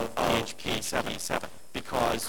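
A man's voice speaking, with a short pause about three-quarters of the way through.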